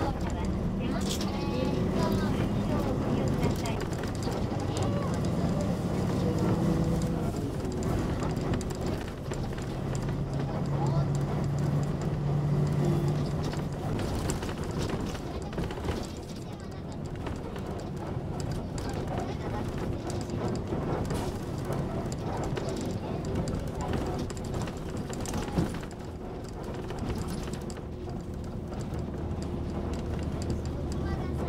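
Cabin sound of a moving route bus: the engine's steady low hum with road noise, its note shifting in pitch as the bus changes speed.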